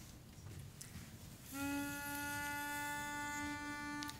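Pitch pipe blown for one steady held note of about two and a half seconds, starting about one and a half seconds in, sounding the starting pitch for a barbershop quartet.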